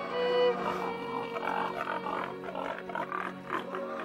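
Pigs grunting over slow background music of held string notes and a steady low drone.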